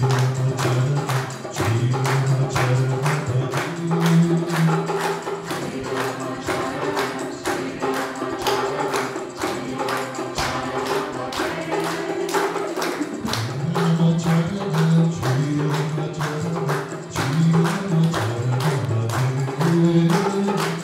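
A devotional bhajan sung to a steady tambourine beat of about three to four strokes a second.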